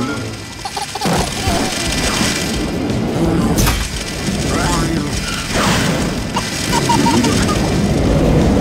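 Cartoon action soundtrack: music under sound effects, with several sudden cracks and booms and a few short voice exclamations from the characters.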